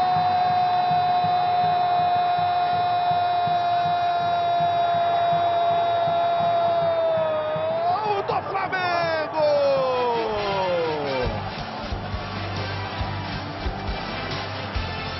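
A football commentator's drawn-out Brazilian-style goal cry, 'Gooool', held on one steady pitch for about seven seconds, then wavering and sliding down in pitch as his breath runs out, about eleven seconds in. Crowd noise sits underneath.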